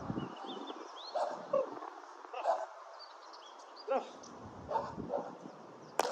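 German Shepherd whining and yipping: about half a dozen short, pitch-bending calls spread through the few seconds.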